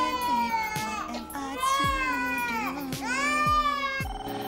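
An infant crying in three long, high-pitched wails, over R&B music with a deep bass beat.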